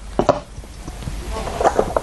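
A few short clicks, about a fifth of a second in and again in a quick cluster past the middle, typical of Go stones being placed on a demonstration board as moves are laid out, with a faint murmur from the commentator.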